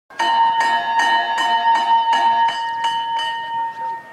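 Racetrack starting bell struck repeatedly, about nine quick even strikes, a little under three a second, each with a clear metallic ring. The strikes stop past three seconds in and the bell rings on, fading.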